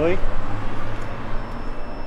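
A steady low hum under a constant wash of background noise, after a man's short shout at the very start.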